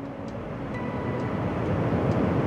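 Passenger train's running noise heard inside the carriage, a steady rumble that grows steadily louder.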